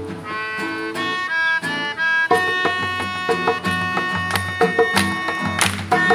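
A melodica plays the melody over strummed acoustic guitar: a run of short notes, then longer held notes from about two seconds in.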